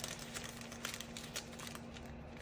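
Faint crinkling of parchment paper and soft handling of pie crust dough, as strips are twisted together on a lined baking sheet, with a faint steady hum underneath.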